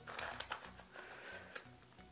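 A plastic Skewb puzzle cube being twisted by hand, giving a few faint, irregular plastic clicks as its corners turn.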